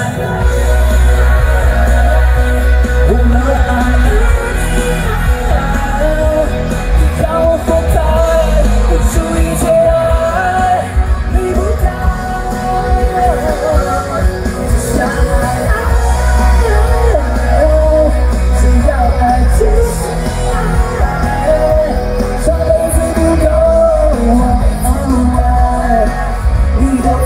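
A male singer singing a pop song live into a microphone over loud amplified backing music with a strong bass beat; the bass drops back for a few seconds around the middle and again later.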